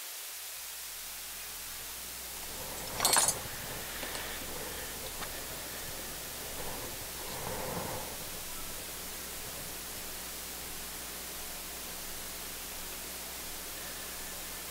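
Steady hiss with a low hum underneath. There is a brief loud burst of noise about three seconds in, and fainter scattered sounds follow until about eight seconds.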